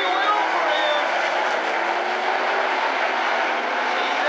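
Field of 360 sprint cars racing on a dirt oval, several methanol V8 engines running hard at once, their pitch rising and falling as they go through the turns.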